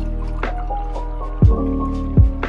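Instrumental background music with a beat, with a low thump about one and a half seconds in. Underneath it, water pours from a large plastic bottle into a drinking glass.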